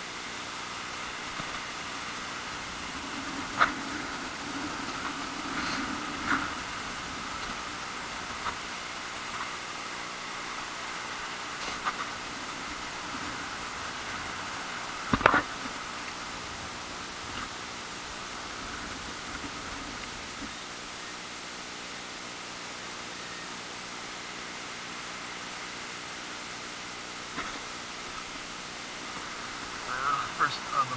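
Steady hiss of wind on the microphone with scattered short knocks and clicks from a sand scoop and metal detector being handled. The sharpest knock comes about halfway through.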